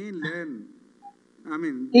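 An interpreter's voice speaking Turkish in short phrases with a pause between them, and a short faint beep-like tone about a second in.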